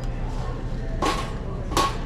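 Wire shopping cart rolling and rattling over a steady low hum, with two short noisy sounds about a second in and near the end.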